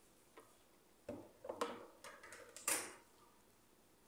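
A few faint clicks and light knocks, scattered between about one and three seconds in.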